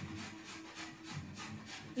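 Faint, rapid rubbing and scraping, about four strokes a second, as hands work soaked dried red chillies against a steel bowl.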